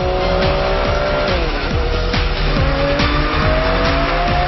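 A car engine changing pitch, dropping about a second in and then climbing steadily as it revs through the gears, heard over music with a steady beat.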